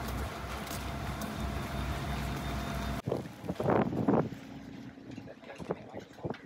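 Steady low hum of construction machinery engines running, with some wind. It cuts off abruptly about halfway through and gives way to a quieter background, where a few short, louder sounds come about a second later.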